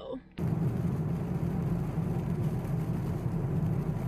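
Steady car-cabin road noise while driving on a rain-wet road: a low rumble with hiss from tyres and rain, cutting in abruptly about half a second in.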